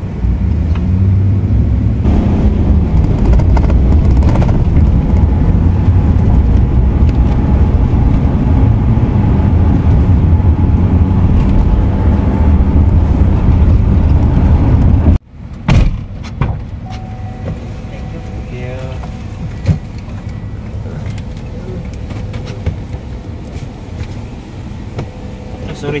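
Road and engine noise inside a moving passenger van's cabin, a loud steady low rumble. About halfway through it drops off abruptly to a quieter cabin hum.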